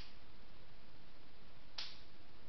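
Two short sharp clicks over a steady hiss: a faint one at the very start and a louder one near the end.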